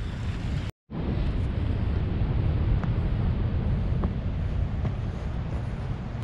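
Wind rumbling on the microphone over a steady outdoor noise, with a few faint ticks. The sound cuts out completely for a moment just under a second in.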